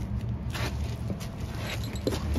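Hook-and-loop strap being pulled snug around a hose nozzle and pressed closed, with a short rasp about half a second in. A steady low rumble runs underneath.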